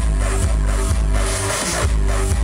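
Electronic dance music playing loud over a festival sound system, heard from the crowd: a steady kick drum about twice a second under a repeating bass line. In the second half the kick drops out briefly under a swell of hiss, coming back near the end.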